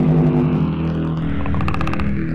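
Logo intro music: a low, steady electronic drone with a fast fluttering build near the end.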